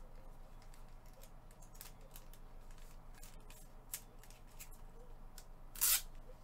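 Clear plastic bag crinkling and rustling in gloved hands as a graded card slab is handled: a string of short crinkles, with one louder burst of crinkling just before the end.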